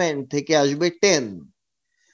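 Only speech: a man's voice narrating in a lecture, which stops dead about a second and a half in.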